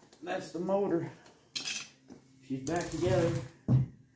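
Metal hand tools and engine parts clinking and clattering in a few short clusters, with one sharp, loud knock near the end.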